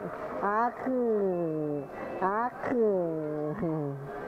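A person's voice giving two long wordless calls, a drawn-out "aak", each jumping up and then sliding down in pitch for more than a second.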